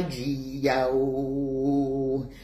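Unaccompanied voice singing in a chant-like way: a short note at the start, then one long note held at a steady pitch from about half a second in.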